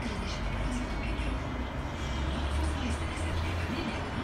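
Steady background of outdoor traffic noise, with a low vehicle rumble that swells from about halfway through, and faint indistinct voices.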